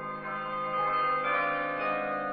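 Bells ringing: a run of struck bell notes, several a second, each ringing on and overlapping the next.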